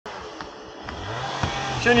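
Steady outdoor background hiss with a low vehicle-engine hum coming in about a second in and rising a little, and faint footfalls on stacked tyres about every half second; a man starts speaking at the very end.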